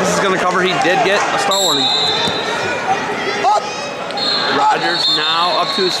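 Several people shouting and calling out over one another across a large arena hall. A steady high-pitched tone hangs underneath, and a couple of short thumps come through partway in.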